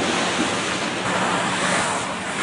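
Rushing, splashing water from a freestyle skier's splash landing in a water-jump pool: spray falling back and churning water, one steady noisy wash that eases off slightly toward the end.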